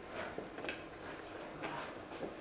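Faint scraping and handling noise of large plaster-backed mosaic fragments being lifted and set on a wooden worktable, with a few light knocks, the clearest less than a second in.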